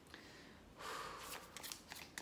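A tarot deck being shuffled by hand: a faint rustle and patter of cards sliding over each other, starting about a second in.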